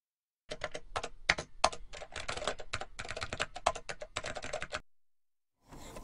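Computer keyboard typing: a quick, irregular run of key clicks lasting about four seconds, stopping abruptly.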